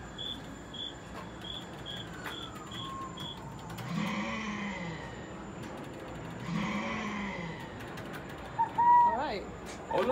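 Outdoor background of distant sounds. A distant siren rises and falls slowly, with a run of short, evenly spaced high beeps that stops after about three seconds. Two drawn-out voice-like calls follow in the middle, and quick chirps come near the end.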